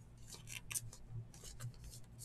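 Faint, scattered ticks and rubbing of a thick trading card handled between the fingers, over a faint low hum.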